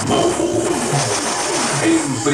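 Part of a sound-system jingle (vinheta): electronic music with gliding, heavily processed voice-like sounds over low repeated pulses.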